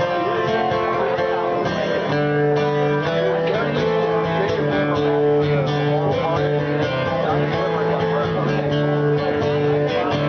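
Acoustic guitar playing a solo instrumental piece, with chords and notes held and changing every second or so.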